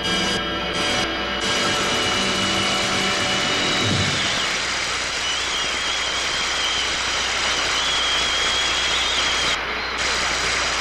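A jazz band holds its final chord, which ends about four seconds in. A studio audience then applauds, with a long, wavering high whistle over the clapping.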